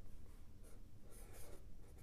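Blue felt-tip marker drawing on paper: a few faint, short scratching strokes as a line and a small circle are drawn.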